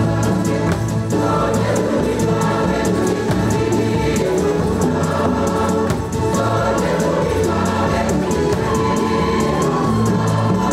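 Church choir singing a jubilee hymn with a steady beat.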